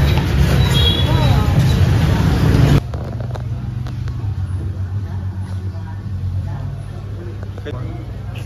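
Busy street noise with people's voices and traffic, which cuts off suddenly about three seconds in. A much quieter steady low hum follows.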